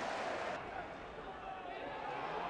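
Football crowd in the stands, a steady murmur of many voices that drops a little quieter about half a second in.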